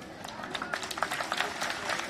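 Crowd clapping: scattered hand claps start a moment in and build into dense applause, with voices among them.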